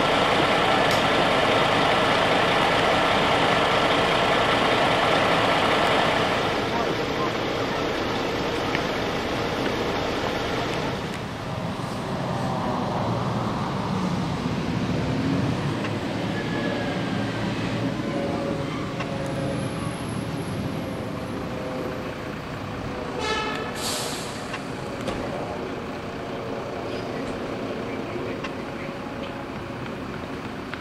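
Fire trucks' diesel engines running and approaching, loudest for the first six seconds. About 23 seconds in comes a short hiss typical of an air brake releasing.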